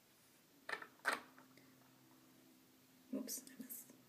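Faint whispering and breathy murmuring: two short whispered sounds about a second in, and a longer murmur near the end.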